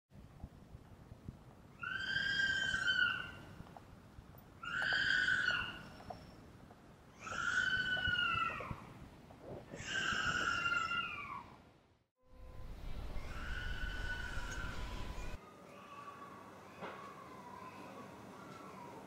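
Four high-pitched metallic squeals from public-transport vehicles, each about a second and a half long, dropping in pitch as it fades. After a short break a fainter squeal follows, then a steady lower whine.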